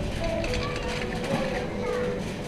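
Shopping trolley rolling over a concrete warehouse floor with a steady low rumble, under store background music and distant unintelligible voices.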